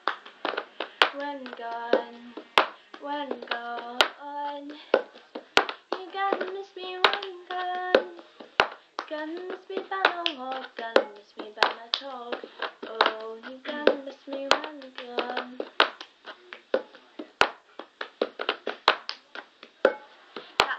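Cup song routine: hand claps, taps and a cup knocked and set down on a wooden floor in a repeating rhythm, with a young female voice singing the tune along with it.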